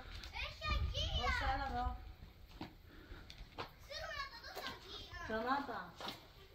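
Young children's voices talking and calling out in short, high-pitched phrases, with a low rumble underneath during the first two seconds.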